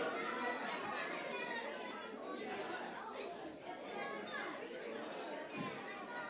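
A church congregation chatting among themselves in a large hall, many voices overlapping with none standing out, children's voices among them.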